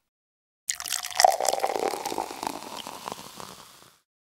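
Beer poured into a glass, starting suddenly about 0.7 s in, then fizzing and crackling as the foam settles, fading away by the end.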